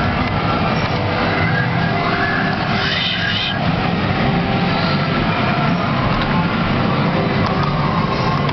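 A 'Round the Bend' fruit machine in play, its electronic bleeps and tones sounding over a loud steady din of background noise, with a short rising run of tones about three seconds in.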